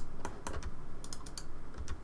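Clicks of a computer keyboard and mouse while working in 3D software: a few separate, sharp key and button clicks spread through the two seconds.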